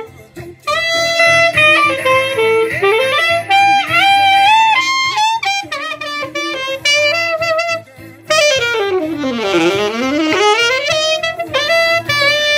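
Alto saxophone playing a melodic solo phrase of held and moving notes, with short breaks for breath near the start and about two-thirds of the way through, then a fast run down and back up.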